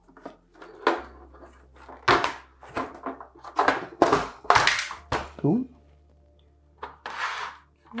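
Clunks and knocks of a vintage portable stereo's internal chassis being worked loose and lifted out of its case, about half a dozen sharp knocks spread over several seconds. A short low grunt of effort comes in the middle.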